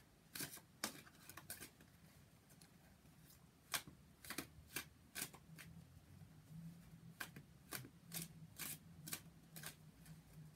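Tarot deck being shuffled by hand: soft, irregular clicks and slaps of cards against each other, in short runs with a pause a couple of seconds in.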